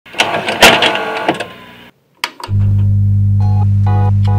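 Produced video intro: a short, loud noisy sting with sharp hits, a brief gap and a click, then a steady low hum starts and short repeated organ-like chords come in over it near the end.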